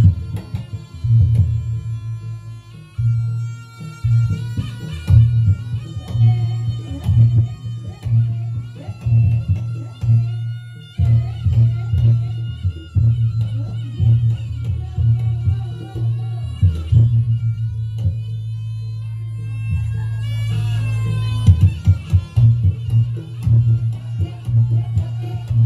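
Live Reog Ponorogo gamelan accompaniment: a steady, pulsing low beat of drums and gongs under a high melody line that holds and steps between notes.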